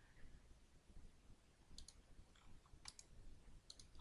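Near silence broken by a few faint computer mouse clicks, some in quick pairs, from about two seconds in.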